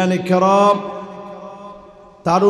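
A male preacher's amplified voice drawing out one long chanted note in the sing-song delivery of a Bengali waz sermon. The note holds almost level and fades away toward the end.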